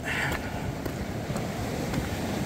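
Steady wind rumble on the microphone mixed with the wash of ocean surf.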